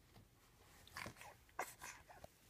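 A small child's short, soft vocal sounds, in a few brief bursts about a second in and again shortly after, with a hushed room between them.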